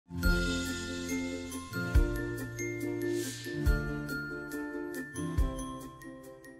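Channel intro jingle: sustained music chords with high ringing notes, a deep bass hit four times at even spacing, and a brief swell of hiss around the middle.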